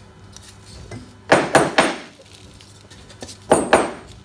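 A timber workpiece knocked hard against the morticer, rapped about three times in quick succession, then again two or three times near the end, shaking the waste chips out of a freshly cut mortise.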